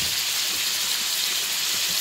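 Zucchini, onion and mushrooms sizzling in hot olive oil in a frying pan: a steady, even hiss.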